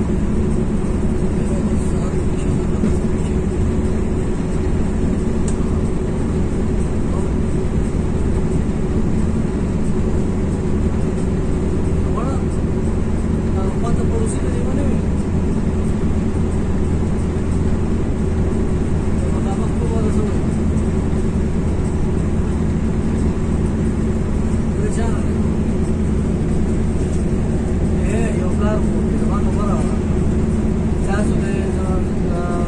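Steady engine drone and road noise inside the cab of an intercity coach driving at highway speed.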